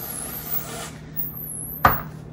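Aerosol whipped-cream can hissing as cream is sprayed onto a drink for about the first second, then a single sharp knock near the end.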